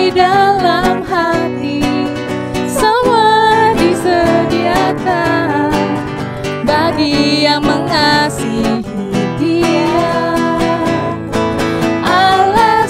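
Two women singing an Indonesian children's worship song together, with guitar accompaniment.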